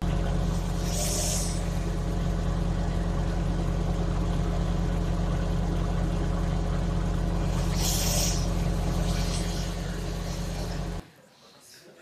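Playback of a muffled covert phone recording: a steady low hum and rumble with no clear words, two brief hissy bursts about a second in and near eight seconds, cutting off suddenly about a second before the end.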